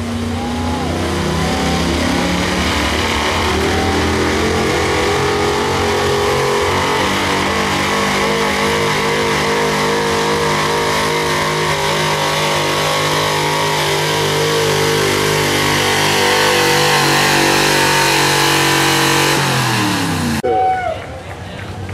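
Gas engine of a 1970s Ford crew-cab pickup at full throttle pulling a weight-transfer sled. The revs climb over the first few seconds, hold high and steady under load, then fall away just before the end as the driver lets off.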